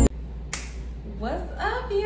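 Intro music cuts off, then a single finger snap about half a second in. A woman's voice follows with rising, sliding vocal sounds that settle into a held note at the end, over a low steady hum.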